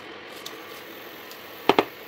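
Wooden spatula stirring cooked tomato rice in a nonstick pan, with two sharp knocks close together near the end as the spatula strikes the pan.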